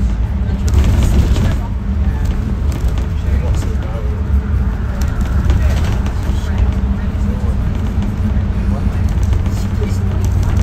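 Bus cruising along a motorway, heard from inside the cabin: a steady low rumble of engine and road noise with a constant hum.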